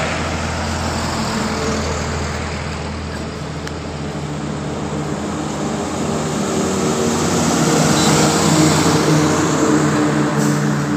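Highway traffic passing close by: a steady rush of tyre noise with the low hum of car and truck engines. A passing vehicle fades away at the start, and the noise builds again toward the end as more vehicles approach.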